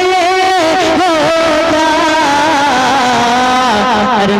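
A man singing a naat in tarannum style into a microphone: long held, ornamented notes that waver and slide in pitch, with no clear words.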